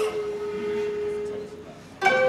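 One long held flute note that fades away about one and a half seconds in, ending a musical phrase.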